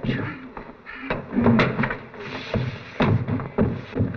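A scuffle: wordless grunts and cries with sudden thumps as Frankenstein's monster grapples with the men holding it.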